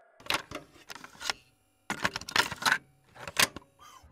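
Rapid runs of clicks and clatter in three bursts: a longer one near the start, another around the middle, and a brief one near the end.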